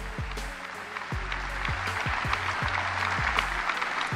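A large audience applauding, the clapping swelling from about a second in, over background music with a low repeating beat.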